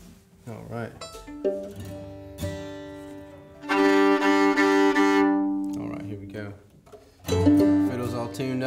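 Fiddle being tuned: two open strings bowed together in long, steady double stops with several bow changes, loudest in the middle. Short bits of talk come before and after.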